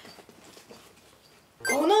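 A quiet pause of about a second and a half, then a high-pitched excited voice starts near the end.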